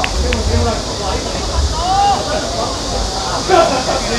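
Players' voices calling out across an outdoor football pitch, with one louder shout near the end, over low wind rumble on the microphone and a steady high hiss.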